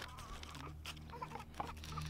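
Faint paper crinkling and rustling with scattered small crackles as hands fold and press a paper bag's base flat.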